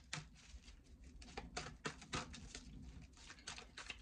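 A deck of tarot cards being shuffled by hand: a faint, irregular run of soft card clicks and slaps.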